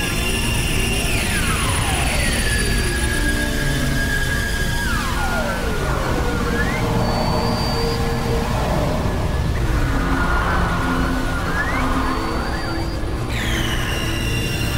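Experimental electronic drone music from a synthesizer: held tones that several times slide slowly down in pitch, over a constant low rumbling noise bed, with a new high tone swooping in near the end.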